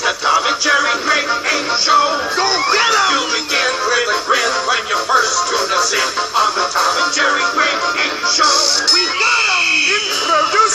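Cartoon show theme song: music with voices singing over it.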